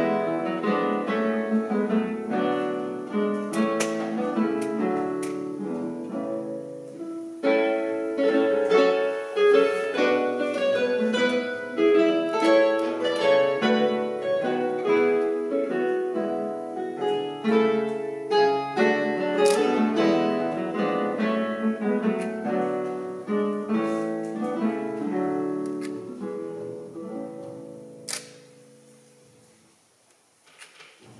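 A classical guitar quartet playing an arrangement of an Irish tune, the four guitars plucking interwoven melody and accompaniment. Over the last few seconds the music thins and dies away, with one sharp click near the end.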